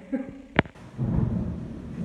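Thunder rumbling low during a night storm, following a sharp snap about half a second in.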